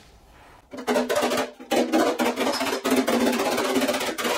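A body hammer tapping rapidly on a sheet-metal panel over a dolly, a fast even run of light metallic strikes with the panel ringing under them, starting under a second in. This is hammer-and-dolly work to smooth high spots out of the panel.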